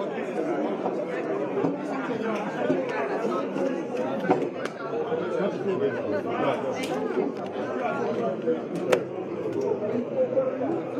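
Crowd of men talking over one another in a packed hallway, a steady din of overlapping voices, with a few sharp clicks about four, seven and nine seconds in.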